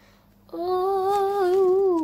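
A girl's voice humming one long held note, starting about half a second in, wavering a little and dipping at the end.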